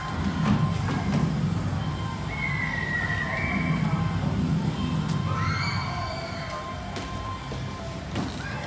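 Squash rally: a few sharp cracks of the ball off racket and wall, and two long squeaks of court shoes on the wooden floor.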